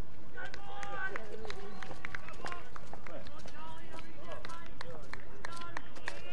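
Distant, unintelligible shouts and calls from players on a football field, over a steady outdoor background with scattered short clicks.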